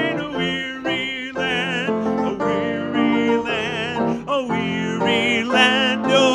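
Hymn singing with instrumental accompaniment, the long held notes wavering with vibrato.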